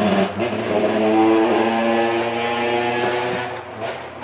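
Motorcycle engine passing by: a steady engine note that swells over the first second and fades away near the end.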